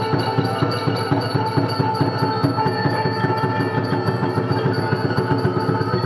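Cambodian traditional ensemble music of the kind that accompanies classical dance: a quick, even beat of drum and percussion strokes under a ringing, xylophone-like melody.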